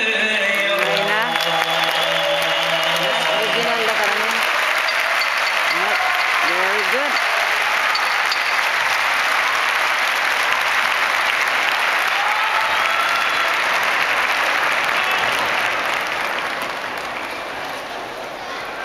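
Large arena audience applauding in a dense, steady wave that thins out near the end, with a few scattered shouts. A man's sung chant fades out under the clapping in the first few seconds.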